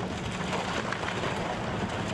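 An excavator demolishing a house, its engine running steadily under a continuous rush and rattle of falling rubble as a brick chimney is pulled down.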